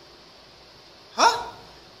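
A man's single short questioning "huh?" with a rising pitch about a second in, after a second of low room hiss.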